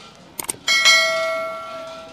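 Quick mouse clicks followed by a bright bell ding that rings out and fades over about a second and a half: the click-and-notification-bell sound effect of a subscribe-button animation.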